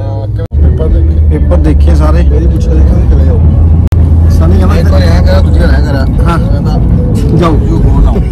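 Men's voices inside a moving car over the steady low rumble of the engine and road. The sound cuts out abruptly twice, about half a second in and just before 4 seconds.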